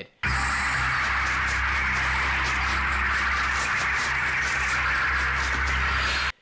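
Horror-film soundtrack: a steady, dense hissing drone over a low hum, holding one level throughout. It starts abruptly and cuts off just as abruptly.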